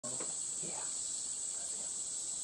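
Steady, unbroken high-pitched insect chorus shrilling in summer woodland.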